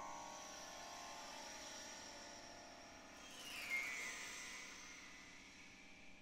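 Quiet contemporary chamber music: a high held tone over lower sustained tones, with a falling pitch glide a little past halfway, thinning out near the end.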